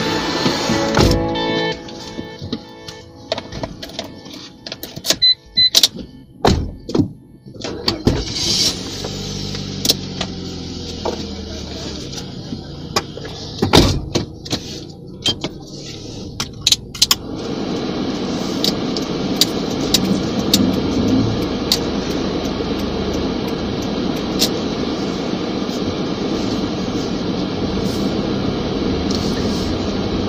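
Music fades out at the start, followed by scattered clicks and thuds of a car door and people settling into the seats. Just past halfway a steady car-cabin hum sets in, the engine running as the car drives, and lasts to the end.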